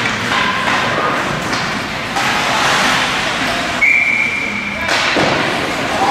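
Indoor ice rink during a youth hockey game: skates scraping, sticks and puck knocking, and spectators' voices over a steady noisy bed. A single steady whistle tone lasting about a second comes about four seconds in.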